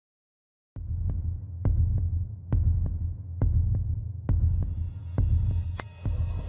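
Heartbeat sound effect: a low double thump repeating about once a second over a steady low hum. It starts about a second in, and a brief high tone sounds near the end.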